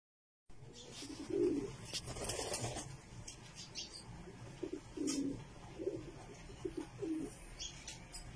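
Pigeons cooing in short, low phrases, repeated several times, with a few sharp clicks and rustles in between.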